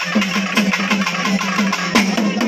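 Fast, steady festival drumming, about four to five beats a second, each stroke with a strong low ringing note.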